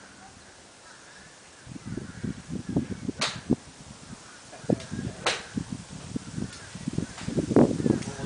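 Two sharp, crisp cracks of golf clubs striking balls, about two seconds apart, from other golfers hitting. Under them, from about two seconds in, a low irregular buffeting noise on the microphone.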